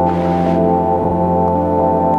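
Ambient drone music in A minor from tape loops, synthesis and a Yamaha portable keyboard: held organ- and brass-like chord tones over a steady low tone. A soft hiss swells briefly near the start.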